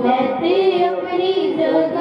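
A group of women and girls singing a devotional song together into microphones, their voices held on long, wavering notes.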